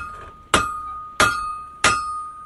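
Hammer striking an anvil in a steady rhythm, a blow about every two-thirds of a second, each ringing out bright and metallic before the next.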